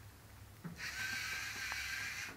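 Lego NXT robot's servo motors and gears whirring steadily as it drives forward. It starts with a soft click about two-thirds of a second in, once the bottle blocking its sensor has been lifted away.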